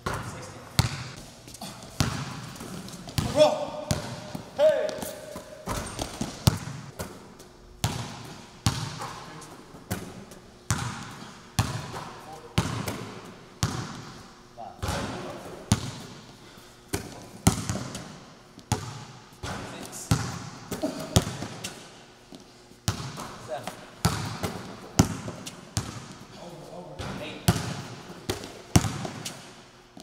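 Basketball bouncing and being shot in a large echoing gym: sharp impacts about once a second, each followed by a short echo.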